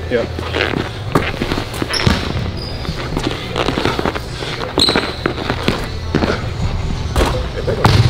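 Basketball dribbled hard on a hardwood court, a quick run of bounces, with sneakers squeaking a few times as the players move.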